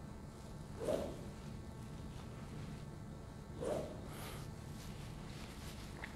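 Faint swish of a golf club swung through the air, twice, about three seconds apart, over a steady low room hum.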